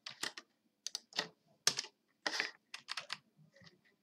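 Computer keyboard being typed on, keystrokes coming in short irregular clusters.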